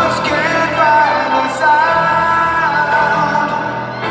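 Live arena performance of a piano ballad: a singer holds long notes and slides between pitches over piano accompaniment, heard through the PA from high in the stands.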